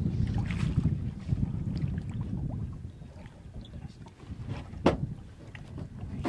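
Low, uneven wind rumble on the microphone in an open boat, with faint handling knocks and one sharp knock near the end.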